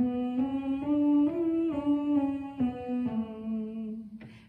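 A woman humming a vocal warm-up exercise on a closed-lip 'M', stepping up a short scale one note at a time and back down again, with a keyboard sounding each note along with her.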